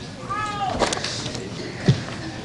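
A short high-pitched vocal call that rises and falls once, then a sharp knock near the end, over a murmur of voices in the room.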